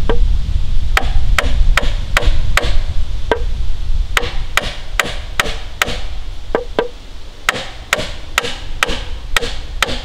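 Hammer driving nails into wooden floor framing: sharp strikes in quick runs of about two or three a second, with short pauses between runs. A low rumble lies under the first few seconds.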